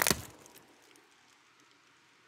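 A brief crackle of cellophane gift-basket wrap being handled, ending in the first few tenths of a second, then near silence: room tone.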